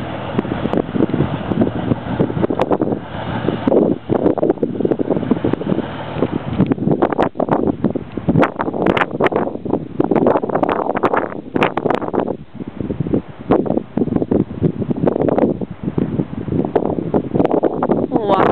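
Wind buffeting the microphone in loud, irregular gusts.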